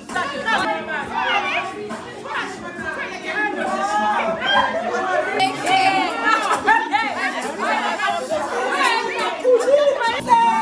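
Group chatter: several women's voices talking over one another, with music playing underneath.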